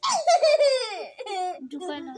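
A child's high-pitched laughter: a long squeal that slides down in pitch over about a second and a half, then breaks into shorter bursts of giggling.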